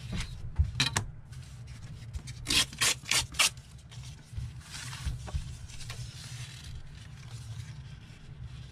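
Paper being handled and rubbed against paper on a tabletop: two quick scrapes about a second in, a cluster of about four rubbing strokes around the third second, then a softer, longer rub.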